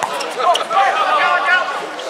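Several people's voices talking and calling out over one another, with a sharp slap of a hand striking a volleyball at the start and another short knock about half a second later.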